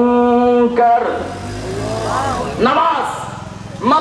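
A man's voice through a microphone holding out a long, steady chanted note of a Quranic recitation, which ends under a second in. It is followed by quieter, rising-and-falling melodic vocal phrases.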